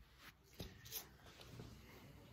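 Near silence, with a couple of faint light clicks about half a second and a second in: tarot cards being handled on a cloth-covered table.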